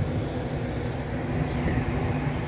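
Strong typhoon wind: a steady low rushing noise.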